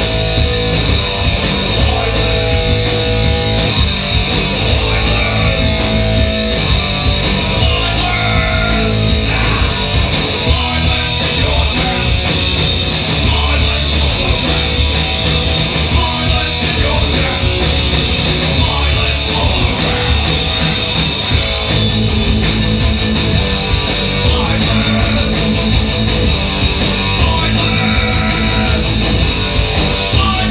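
Punk rock band playing live: distorted electric guitar, bass guitar and drum kit, loud and continuous.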